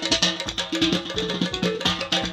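Live Azerbaijani folk dance music: a quick drum beat under a melody.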